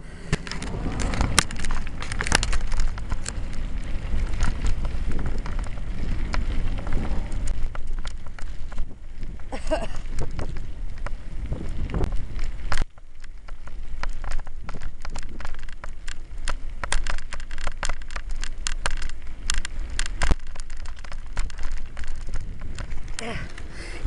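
Bicycle tyres rolling over a crushed-stone path, crackling and crunching, with wind rumbling on the microphone. The rumble stops suddenly about halfway through while the crackling goes on.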